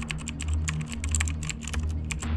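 Keyboard typing sound effect: a quick, irregular run of key clicks, about ten a second, over a low steady drone.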